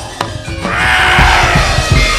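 Wayang kulit accompaniment music: a couple of sharp knocks near the start, then a loud, dense, ringing passage from about half a second in.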